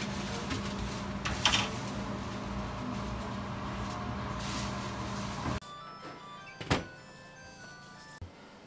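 Steady mechanical hum of bakery equipment with a metallic clatter about a second and a half in. It cuts off abruptly past the middle, leaving faint background music and a single knock.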